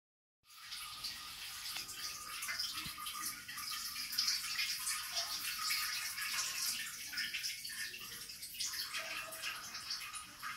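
A stream of urine splashing into toilet bowl water: a steady, splashy hiss that begins about half a second in and eases slightly toward the end.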